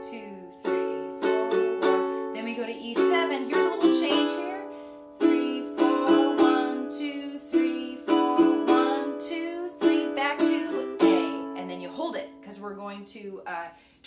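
Ukulele strummed in a slow march strum: single down-strokes on each beat, each chord left to ring and die away before the next, in groups with short pauses between, playing chords in the key of A.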